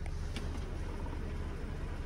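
Steady low rumble with faint handling noise and a few light ticks as a handheld camera is swung around a car's interior.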